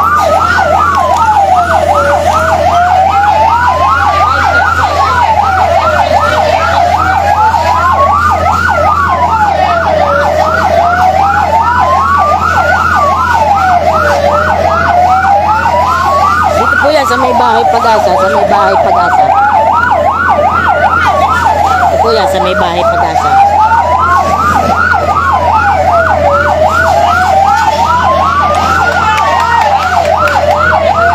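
Two fire truck sirens sounding together without a break. One is a slow wail that rises over about three seconds and falls back, once every four seconds. The other is a rapid yelp, with a steady low hum underneath.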